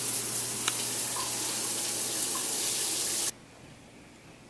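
Shower running: a steady spray of water, cutting off suddenly near the end.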